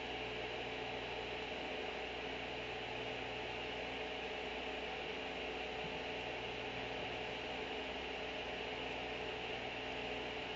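Steady electrical hum with a faint hiss underneath, unchanging throughout, with no other sound.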